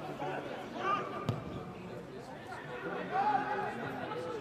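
Men's voices calling out across a largely empty football stadium, with a single sharp thud of a football being kicked about a second in.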